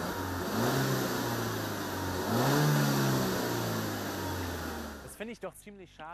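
The Peugeot 308 GT's 1.6-litre turbocharged petrol four-cylinder (THP 205) heard from outside at the exhaust, rising twice in pitch, then dropping away and fading about five seconds in. The real engine and exhaust sound is uniform and unobtrusive, with no artificial sound boost.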